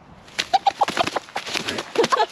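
A hen struggling under a person's hands, flapping her wings in quick bursts with short clucks, starting about a third of a second in; she is not staying hypnotized.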